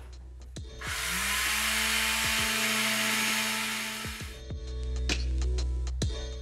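Handheld electric sander sanding the top of a wooden (laminated veneer lumber) stair handrail flush over glued-in wood plugs. The motor spins up about a second in, runs with a steady hum and hiss against the wood for about three seconds, then stops.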